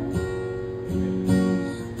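Acoustic guitar strummed, a few chords ringing on with no singing over them.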